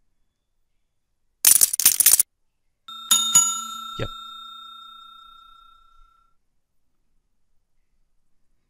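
Subscribe-button animation sound effect: a short burst of noise about a second and a half in, then a bright bell ding that rings and fades away over about three seconds.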